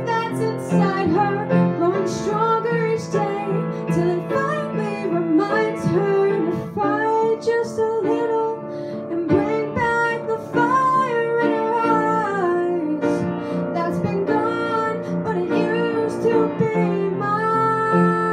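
A teenage girl singing a slow ballad while accompanying herself on piano, her voice carrying a melody of long, bending held notes over steady piano chords.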